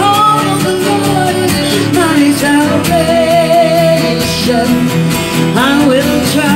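Two acoustic guitars strummed in a steady rhythm under a sung melody with vibrato.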